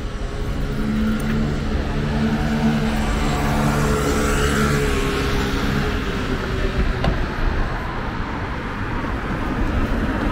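City street traffic: a vehicle engine hums steadily through the first seven seconds, with a vehicle passing around the middle.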